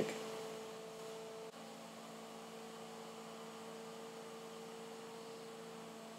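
Faint steady electrical hum of a few constant tones over low hiss, from the recording setup, with no other sound.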